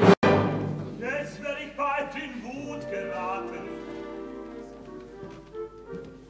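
Opera orchestra playing in a 1970s live recording, loud at the start and gradually softening, with a sharp dropout in the sound a fraction of a second in.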